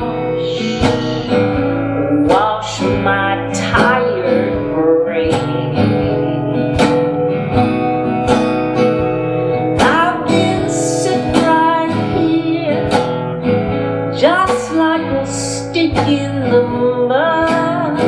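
A woman singing to her own acoustic guitar accompaniment, the guitar strummed in a steady rhythm under the voice.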